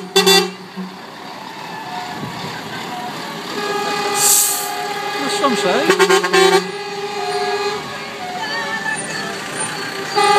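Passing lorries sounding their air horns in quick repeated toots, with the engines of the slow-moving trucks running underneath. A string of blasts cuts off about half a second in and another comes around six seconds in. There is a short hiss a little after four seconds.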